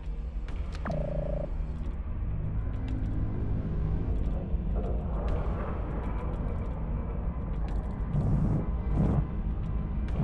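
Film sound design for a spaceship: a steady deep rumble. About a second in, a short electronic tone falls and then holds for about half a second. From about halfway, layered sustained tones build up, with swells near the end.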